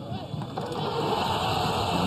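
Football stadium crowd noise from the match broadcast, swelling steadily louder as an attack ends in a shot on goal, with a commentator's voice in it.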